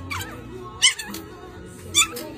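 A Pomeranian puppy giving short, high yips, twice, over background music.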